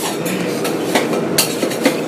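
Kitchen noise at an okonomiyaki griddle: a steady hiss with a few sharp metal clicks of spatulas on the iron plate.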